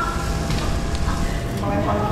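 Indistinct voices over a steady low background din, the hubbub of a busy restaurant.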